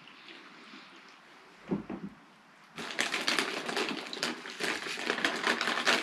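Plastic snack packet crinkling and rustling as it is handled, starting about three seconds in after a quieter stretch.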